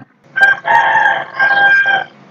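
One long, high-pitched animal call starting about half a second in, made of several held notes in a row and as loud as the narration around it.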